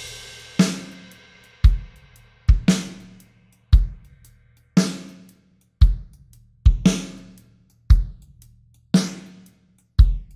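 Recorded drum kit playing a slow beat through Baby Audio's TAIP tape-emulation plugin: kick and snare alternate about once a second, with cymbal ringing after the snare hits. The plugin's mix control is being lowered, blending the taped signal with the dry drums.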